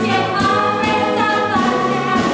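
A large stage chorus of mixed voices singing a musical-theatre number in full voice.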